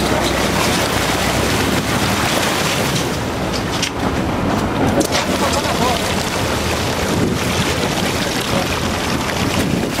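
Wind buffeting the microphone over water rushing and churning against the side of a sportfishing boat, with the boat's engine running steadily underneath.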